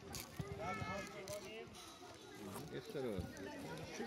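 Voices calling out across an outdoor football pitch: children's high-pitched shouts to one another as they play, with no single voice close by.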